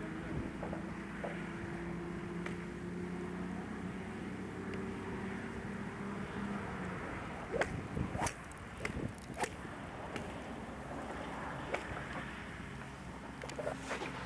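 A driver club head striking a teed golf ball with a sharp click about halfway through, followed by a few more sharp clicks over the next several seconds. A steady low hum runs underneath and fades out just before the strike.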